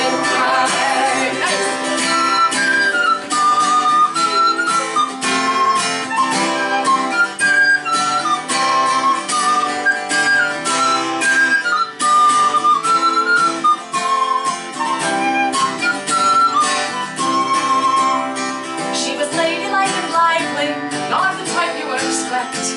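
Instrumental folk music: steady acoustic guitar strumming under a high, bright fipple-flute melody (a recorder or whistle-type flute) played in short stepwise phrases. The flute drops out about a second before the end, leaving the guitar.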